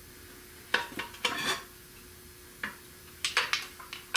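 Sharp metallic clinks and clanks in a few separate bunches as a wrench bar is worked on the crankshaft bolt of a seized Buick 455 V8. The seized crank turns just a bit one way and stops.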